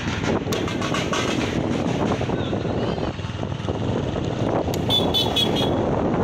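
Wind buffeting the microphone on a moving motorcycle, with engine and road noise underneath. A quick run of short, high-pitched toots comes near the end.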